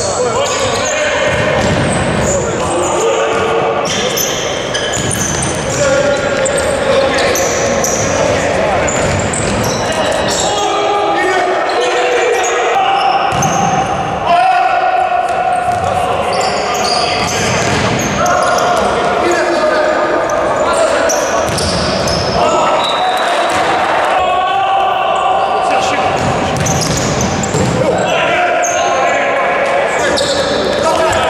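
Futsal ball being kicked and bouncing on the indoor court in a run of sharp knocks, mixed with players' and spectators' shouts, all echoing in a large sports hall.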